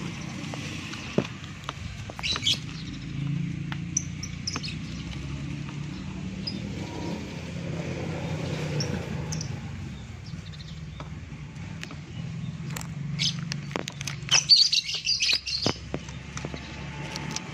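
Caged pet birds in shipping boxes chirping in short scattered calls, with a dense run of chirps near the end, over a low steady hum.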